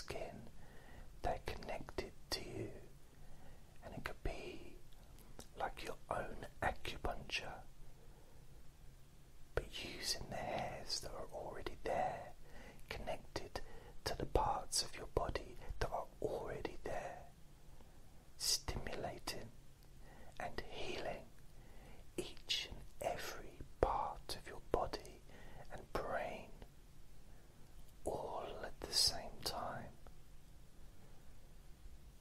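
Whispered speech in short phrases with brief pauses between them.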